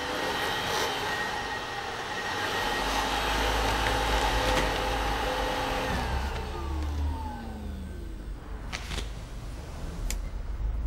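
A steady whirring motor, like a vacuum cleaner, that winds down about six seconds in, its pitch falling as it fades. A sharp click comes near the end.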